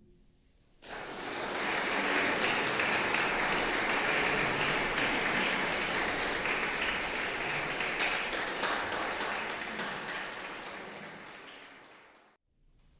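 Audience applauding after a choir piece: the clapping breaks out about a second in, is loudest early, then slowly thins to scattered single claps and dies away near the end.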